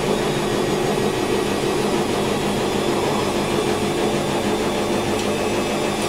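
Steady low mechanical hum with a few held tones, unchanging throughout.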